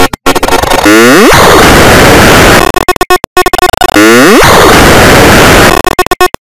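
Harsh, heavily distorted digital noise with stuttering dropouts; a glitchy falling sweep cuts through about a second in and again about four seconds in.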